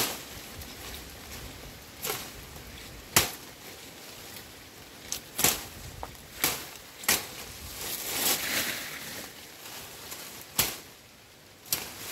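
Long-bladed pruning knife chopping into the woody stems of a tea bush: about nine sharp strikes, irregularly spaced, as the bush is pruned back.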